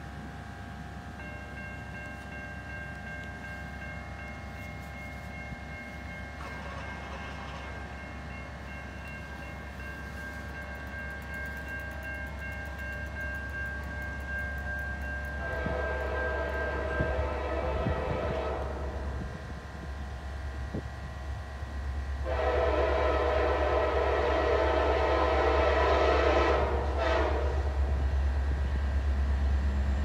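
Nathan K5LA five-chime air horn on a Norfolk Southern SD60E locomotive sounding two long blasts for a grade crossing, the first about halfway through and the second, longer one a few seconds later. Under the horn is the low rumble of the approaching diesel locomotives, growing louder. Before the first blast, steady high ringing tones come from the flashing crossing signals.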